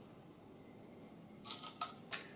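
Quiet room tone, then a few short, sharp clicks near the end.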